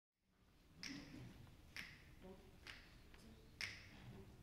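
Four crisp finger snaps, evenly spaced a little under a second apart, snapping out the tempo as a count-off for a jazz tune.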